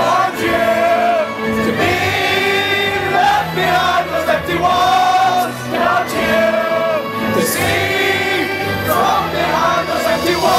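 Live concert music: a singer holds long notes over a band and orchestra.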